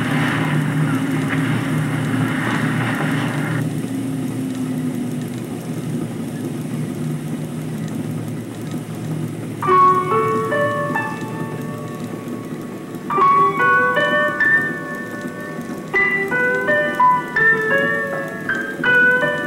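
Steady noisy hiss and low rumble, then solo piano music entering about ten seconds in, with single notes and chords struck in short groups that die away.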